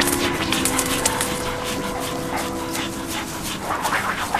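A dog panting rapidly, over faint sustained music notes.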